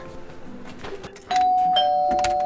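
Doorbell chime ringing ding-dong: a high tone about a second in, then a lower tone half a second later, both ringing on.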